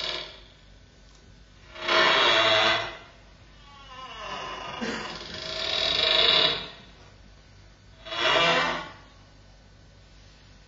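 Experimental live electro-acoustic music: four swells of rushing, hiss-like noise with faint pitched bands, each about a second long, the third longer and rising, separated by near-quiet pauses.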